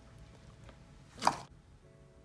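A large batch of white slime being worked by hand in a plastic tub, with one short, sharp squelch a little past the middle as the slime is pulled up. Faint background music under it.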